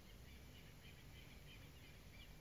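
Near silence: faint steady background hiss in a pause between spoken phrases.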